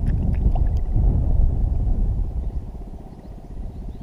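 Wind buffeting the camera microphone on open water: a loud, ragged low rumble that eases off after about two seconds, with a few sharp clicks in the first second.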